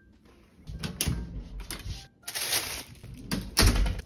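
Handling noises: a room door being worked, with plastic bag rustling as a bagged meal is picked up, and a heavy thud near the end.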